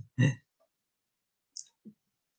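A man's voice ends with one short word just after the start, followed by near silence broken by two faint clicks near the end.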